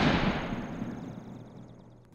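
The decaying tail of a boom-like intro sound effect: a deep, noisy rumble that fades away steadily, leaving a faint high ringing tone by the end.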